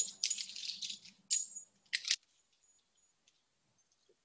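Climbing rope and friction-hitch cord being wrapped and handled, the cord rustling and the carabiner at the harness rattling for about a second, then two short clinks. Everything stops about two seconds in.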